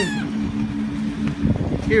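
A steady low motor hum holding two even tones, with a man's short laugh at the start and a few low knocks shortly before the end.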